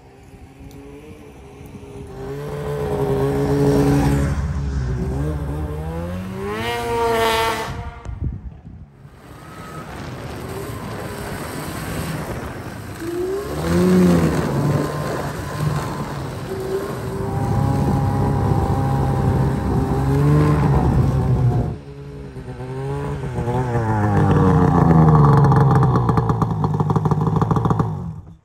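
Two-stroke snowmobile engine revving and pulling away, its pitch climbing and falling several times. The sound cuts off abruptly twice, about eight seconds in and about twenty-two seconds in.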